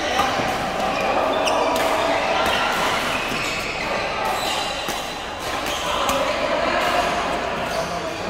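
Busy indoor badminton hall: scattered sharp pops of rackets striking shuttlecocks from several courts over a steady background of players' voices and chatter, echoing in the large hall.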